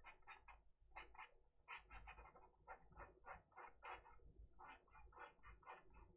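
Near silence with faint, quick scratches of a pen stylus on a drawing tablet, about three or four a second, as short blending strokes are laid down.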